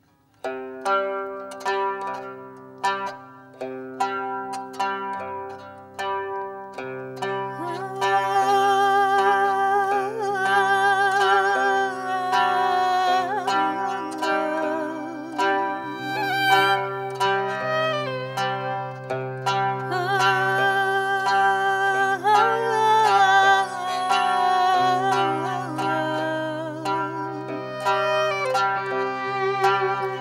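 Qanun (Arabic plucked zither) played with finger picks, opening with separate plucked notes in the Hijaz Kar maqam. From about eight seconds in, the music thickens: a sustained, wavering melody and a steady low bass line join the plucked strings.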